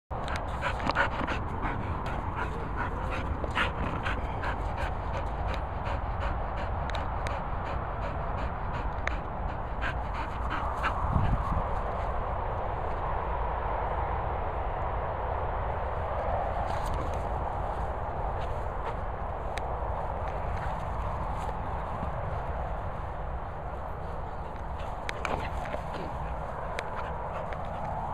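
Cocker spaniel panting and whimpering, with quick short breaths packed closely through about the first ten seconds.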